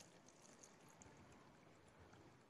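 Near silence, with a faint trickle of water into stacked plastic cups, mostly in the first second.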